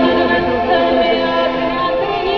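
Live music: a woman singing into a microphone over instrumental accompaniment, holding long notes.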